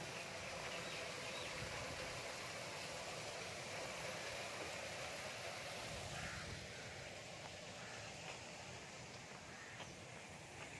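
Steady outdoor background hiss with a few faint bird calls.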